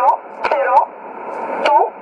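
Numbers-station voice reading digits in English, received on shortwave through a portable receiver's speaker. The voice is narrow and tinny, cut off above and below, with sharp static clicks scattered among the spoken syllables.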